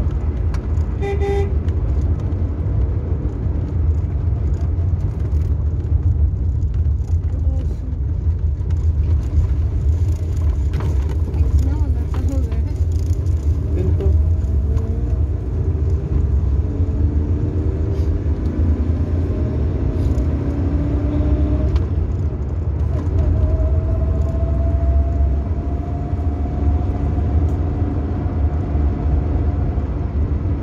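Vehicle engine running with heavy road rumble, heard from inside the cabin while driving, its pitch shifting and rising in the second half as it speeds up. A short horn toot sounds about a second in.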